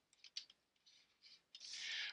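Faint, scattered taps and scratches of a stylus writing on a tablet screen, then a soft breath drawn in near the end.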